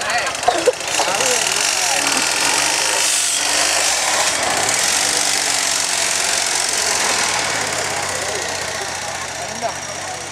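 Homemade buggy's exposed engine running loud as the buggy moves off, fading over the last few seconds, with crowd voices under it.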